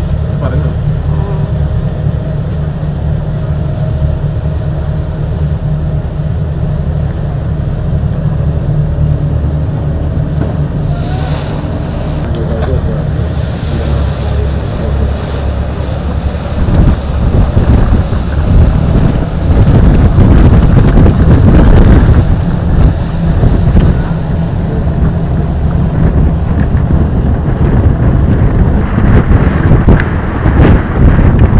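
Passenger ferry's engines running with a steady low drone as the boat moves off across the water. From about halfway through, wind buffets the microphone in loud, uneven gusts as the boat picks up speed.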